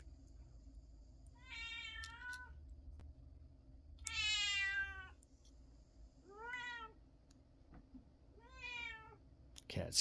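Domestic cat meowing four times; the second call is the longest and loudest.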